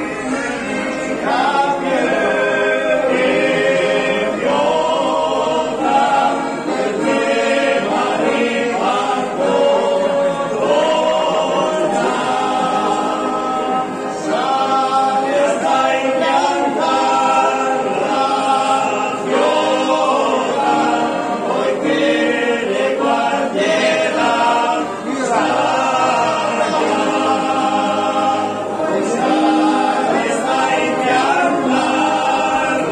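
A small group of men's voices singing a song together in harmony, sustained phrases with no break.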